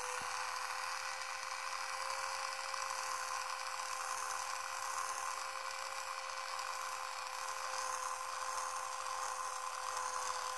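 Electric facial cleansing brush with a soft synthetic brush head running with a steady electric buzz.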